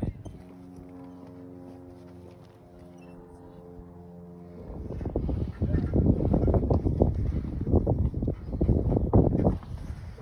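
A steady droning hum with a row of even overtones for the first four and a half seconds, then loud, irregular scuffing and crunching from footsteps and handling on a rocky trail.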